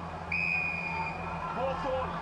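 An Australian football umpire's whistle, one steady blast about a second long, heard through the TV broadcast with faint commentary underneath. It follows a contested mark attempt.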